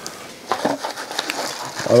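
Plastic zip bag rustling and crinkling, with a few light clicks, as small rubber drive belts are handled.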